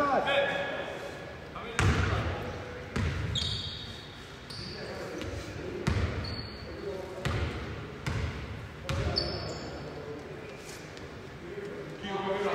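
A basketball bouncing on a hardwood gym floor, a series of single echoing thuds about a second apart, with a few short sneaker squeaks in between.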